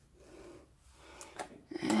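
Mostly quiet room with a soft breath and two small clicks, then near the end a woman's voice holding a long, drawn-out "and…".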